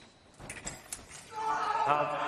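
Quick sharp clicks of foil blades and feet on the piste during a fast exchange, then, about one and a half seconds in, a fencer's loud shout as the touch is made.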